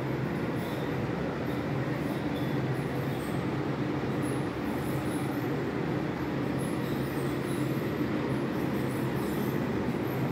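Small 9-volt DC submersible water pump running, a steady even hum with a low drone. It is the cold-water pump, switched on by the dispenser's relay.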